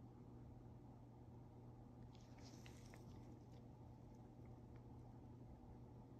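Near silence: faint room tone with a steady low hum, and a few faint light ticks about two to three seconds in.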